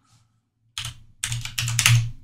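Typing on a computer keyboard: a quick run of keystrokes starting just under a second in, entering a command at a terminal prompt.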